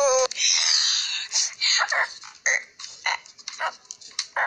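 A child's voice: a long high note breaks off just after the start, followed by a breathy rasp and a string of short, uneven yelps or growls that thin out toward the end.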